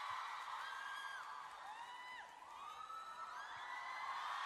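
Large concert audience cheering, heard faintly from the played-back concert video: a steady wash of crowd noise with many high-pitched screams rising and falling above it.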